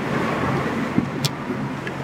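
Steady road noise heard inside a moving car: a low, even hum of engine and tyres.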